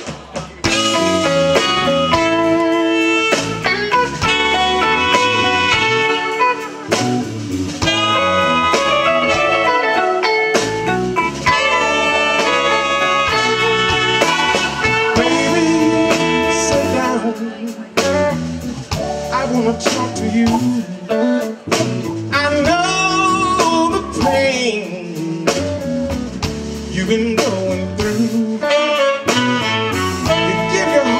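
Live blues band playing: electric guitar, keyboard, drum kit and a horn section of saxophone and trumpet, coming in about a second in.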